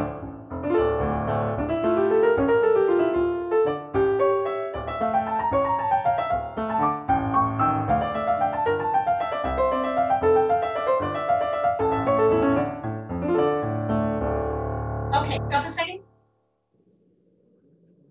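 Piano playing a lively ballet-class accompaniment, with quick runs over a steady bass. It cuts off suddenly about two seconds before the end.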